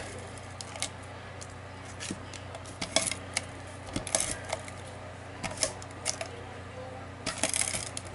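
Scattered light clicks and rustles of cardstock being handled and an adhesive applied to it by hand, over a faint steady hum.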